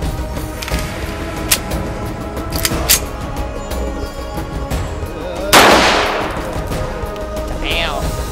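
A single shot from an M1911 .45 ACP pistol about five and a half seconds in: a sharp report that fades over about a second and a half, over background music.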